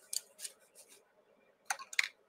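A few short clicks and taps of painting supplies being handled on a tabletop: a couple near the start and a sharper, louder pair near the end.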